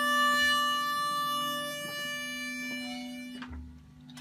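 Harmonica holding one long note over a low steady drone at the end of an instrumental break in a folk song, fading out about three and a half seconds in, with faint guitar plucks underneath.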